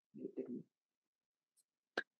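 A brief, two-syllable hummed voice sound, like an approving "mm-hm", just after the start. Then a single sharp hand clap right at the end as applause begins.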